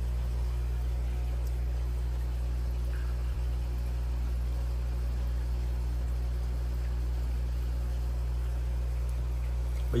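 Steady low hum of running aquarium equipment, with faint bubbling water from the rising air stream.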